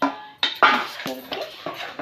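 A metal ladle knocking and scraping against an aluminium pressure-cooker pot as boiled potatoes are stirred into a curry: a loud clack about half a second in, then several lighter knocks.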